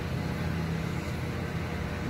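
Steady low background rumble.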